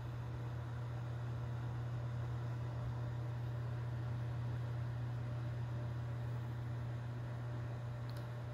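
Steady low hum with a faint hiss over it, unchanging throughout: background room noise.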